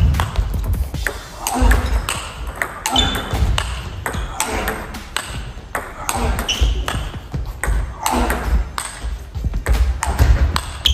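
Table tennis ball in a long rally, ticking back and forth off the paddles and the table in a quick, repeated series of sharp clicks.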